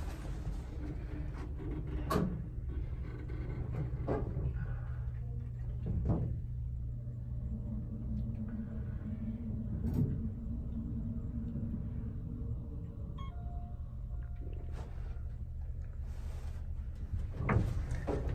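Otis hydraulic elevator car travelling down: a steady low hum, with a few light knocks about every two seconds in the first part as the cab shakes. A brief tone sounds a few seconds before the end.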